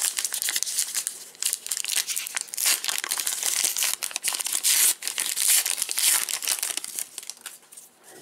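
Plastic wrapper of a baseball-card pack being torn open and crinkled by hand, a continuous run of crackly rustling that eases off near the end as the cards come out.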